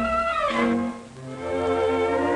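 Orchestral film music led by bowed strings. A held phrase slides downward about half a second in, then after a brief dip a new sustained chord comes in.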